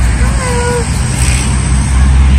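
A woman's short, coaxing 'ooh' call about half a second in, over a steady low rumble.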